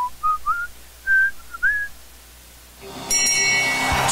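A person whistling a short tune of several notes that step and slide upward, ending about two seconds in. About three seconds in, a loud sustained bright tone with many overtones starts, louder than the whistling.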